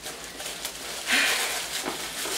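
Paper rustling and crinkling as hands rummage through a bag, with a louder rustle about a second in.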